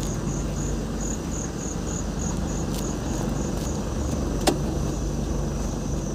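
A vehicle's engine running with a steady low hum, while crickets chirp in a high, even pulse, about three chirps a second. A single sharp click comes about four and a half seconds in.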